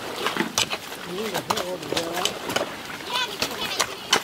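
People's voices talking and calling out, with many short sharp splashes and slaps of wet mud or water in between.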